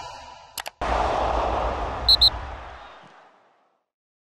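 Logo-animation sound effect: two quick clicks, then a sudden burst of noise that fades away over about three seconds, with two short high pings in the middle.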